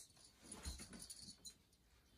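Near silence in a small room, with a few faint taps and rustles from game cards and pieces being handled on the board in the middle.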